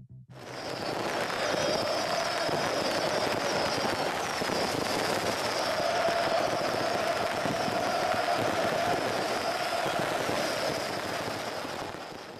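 A large football crowd cheering in a stadium: a dense, steady wall of noise with a wavering high pitch running over it. It starts suddenly just after the music stops.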